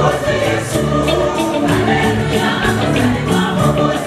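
Large church choir singing together, accompanied by a live band with drums keeping a steady beat.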